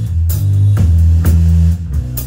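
Live rock band playing loud: bass guitar and drum kit with repeated cymbal crashes, along with electric guitar.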